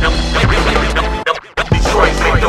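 Hip hop beat with DJ turntable scratching and no rapping. The beat drops out briefly a little over a second in, then comes back.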